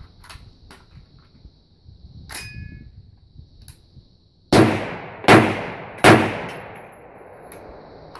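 Three rifle shots from an AR-15 chambered in 350 Legend with a two-port muzzle brake, fired about a second apart, each followed by a ringing echo. A short metallic clack comes a couple of seconds before the first shot.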